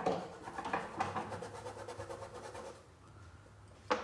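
Faint scratchy rubbing of a small round stiff-bristled brush working fabric paint into cloth, fading out about three seconds in.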